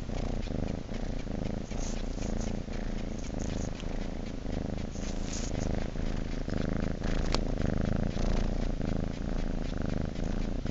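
Domestic calico cat purring steadily throughout, with one brief click about seven seconds in.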